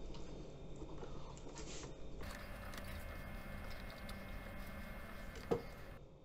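Faint, soft rustling and dabbing of paper napkins against cured salmon fillets on a steel tray, with one short knock near the end.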